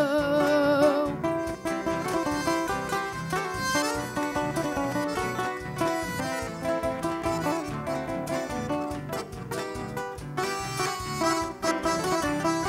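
Nylon-string acoustic guitar picking a melody over band accompaniment in the instrumental break of a regional gaúcho song. A held sung note ends about a second in.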